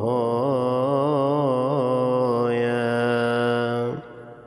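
A man's voice chanting one long drawn-out 'aah' between psalms of the Agpeya prayer. For the first two and a half seconds the pitch wavers in ornaments, then it holds a steady note and stops just before the end.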